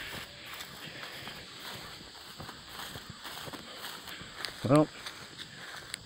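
Footsteps walking over dry, sparse grass and dusty ground, heard as an uneven run of small soft crackles and scuffs.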